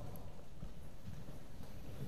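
Soft, irregular low thuds and rumble, with no speech.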